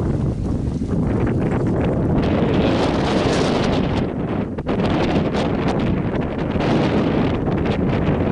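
Wind buffeting the microphone outdoors: a loud, uneven rumbling rush of noise with no steady engine or machine tone.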